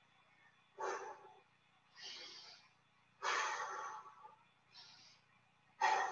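A man's heavy breathing during push-ups: about five short, forceful breaths a second or so apart, some hissing through the nose.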